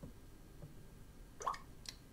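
Quiet room tone with a faint click at the start, a short pop rising in pitch about one and a half seconds in, and another faint click near the end.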